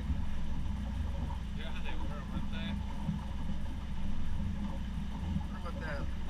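Boat engine running steadily at low speed, a constant low rumble. Faint, indistinct voices come through briefly twice.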